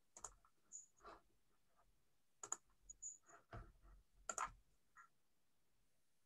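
Faint, irregular clicks of someone working a computer's keys and mouse, about six in a few seconds, with near silence between them.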